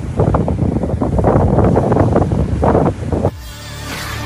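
Wind buffeting a phone microphone by the sea, with surf behind it, for about three seconds; it cuts off suddenly and a short electronic logo jingle with a low hum starts.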